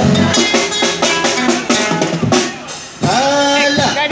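Live street-busker music: an instrumental passage with a steady drum beat under guitar, dropping briefly in loudness before a man's singing voice comes back in about three seconds in.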